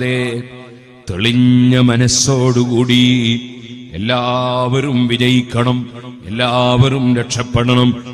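A man's voice intoning in a chant-like, sing-song delivery, holding long level pitches. It comes in three phrases after a brief pause near the start.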